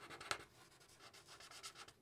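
Faint, intermittent scratching of alcohol-based marker tips colouring on marker paper.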